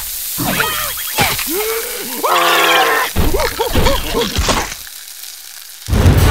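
Food sizzling on a hot griddle, with cartoon caterpillar characters groaning and squeaking in short, pitch-bending cries over it. The cries die away near the end, leaving quieter sizzling.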